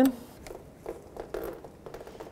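Faint, soft handling noises as gloved hands unthread and pull a brake caliper banjo bolt free from its flex hose, a couple of quiet scuffs near the middle.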